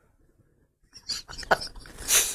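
Near silence for about a second, then short bursts of stifled laughter from men, with a sharp click about halfway through.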